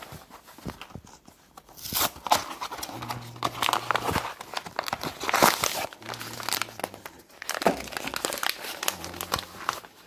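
Packaging being crinkled and torn: a cardboard jambalaya-mix box and its inner bag handled and opened, in irregular crackling bursts with a few louder rips.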